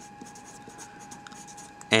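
A marker writing a word in a run of quick short strokes, a faint scratchy rubbing of the felt tip on the writing surface.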